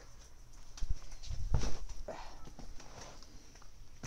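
A few dull knocks and rustling from the phone being handled and swung around, the knocks clustered between one and two seconds in.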